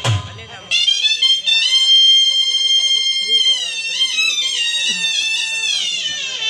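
Shehnai sounding a long, high, held note, then sliding down through a wavering falling phrase. A few dhol beats end it just as it begins.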